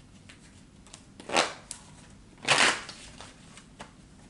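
A tarot deck being shuffled by hand: two short swishes of cards, about a second apart, with a few light clicks of the cards between them.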